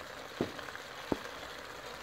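Diced potatoes sizzling gently in a steel pot over low heat, with two light knocks, about half a second and a second in.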